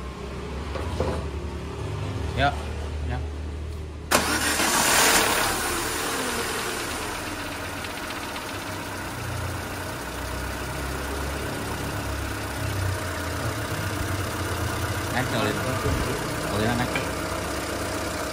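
Peugeot 207 petrol engine started for the first time after a head gasket replacement. It catches about four seconds in, loud at first, then settles into a steady idle.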